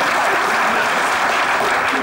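Live audience applauding steadily.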